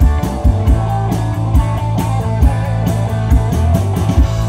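Live rock band playing an instrumental passage: electric guitars and bass guitar over a drum kit keeping a steady beat.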